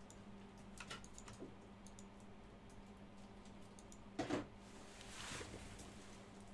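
Faint, scattered clicks of typing on a computer keyboard, with a slightly louder knock just after four seconds, over a low steady electrical hum.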